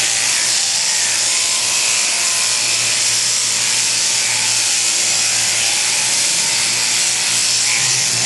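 Electric sheep-shearing handpiece running steadily through the fleece: a continuous high buzz over a low hum.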